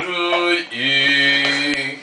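Male voices chanting in a mock liturgical style: two long sung notes, the second held for about a second.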